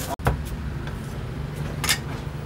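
Steady low rumble of street traffic, with sharp knocks of a steel cleaver against a thick wooden chopping block: one just after the start and a louder one near the end.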